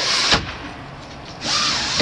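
A trailer window's screen or privacy shade being slid across its frame: a short scraping slide at the start and another near the end.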